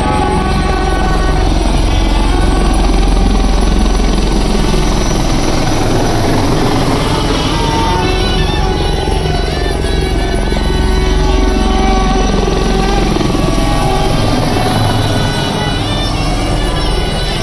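Helicopter rotor and engine running overhead, steady and loud, with music playing over it.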